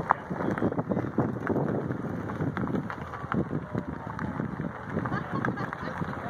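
Corvettes rolling slowly past in line at low speed, their engines running, with wind on the microphone and voices in the background.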